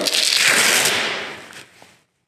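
Hook-and-loop (Velcro) fastening on a floor grinder's dust skirt being peeled apart: one loud ripping rasp that fades away over about a second and a half.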